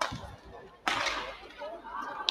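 Badminton racket striking a shuttlecock with a sharp crack during a rally. About a second in, a sudden louder burst of noise with voices, which then fades.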